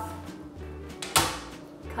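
A cutting board set down on a glass tabletop, making one sharp clack about a second in. Background music with a repeating bass line plays under it.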